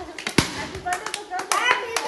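Hands clapping irregularly, mixed with voices, with one sharper knock about half a second in. Near the end the voices rise in pitch.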